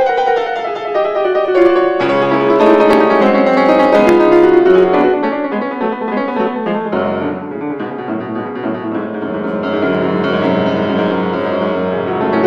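Grand piano playing a fast, dense passage of a concert étude in C-sharp minor, loud through the first half, easing off a little after about six seconds and building again near the end.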